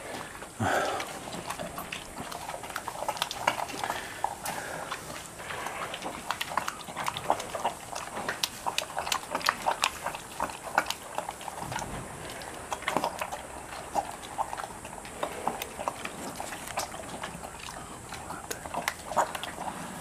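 A bear eating wet grain porridge from a trough, a run of irregular wet smacks and chewing clicks.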